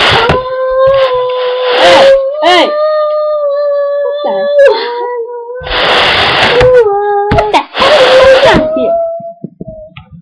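Long drawn-out howling notes, each held steady for several seconds, broken by short harsh noisy bursts.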